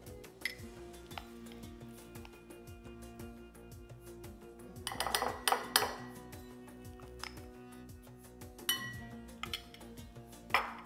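A metal spoon clinks and taps against small glass bowls while scooping soft fresh cheese, with a burst of clinks about five to six seconds in. Soft background music plays throughout.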